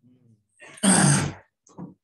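A man clearing his throat once: a loud, rough burst of about half a second, about a second in, with softer voice sounds just before and after it.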